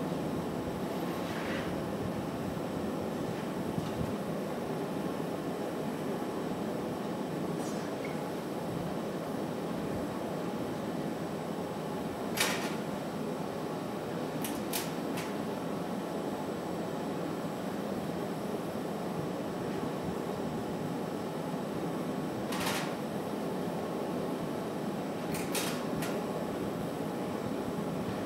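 Steady roar of a glassblowing studio's gas-fired glory hole and ventilation. A handful of sharp clicks from metal hand tools are scattered through the second half.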